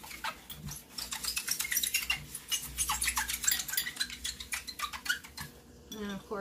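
A glass wine bottle scrubbed hard by hand in rapid, irregular scratchy strokes to rub off sticky label residue. A dishwasher runs low in the background.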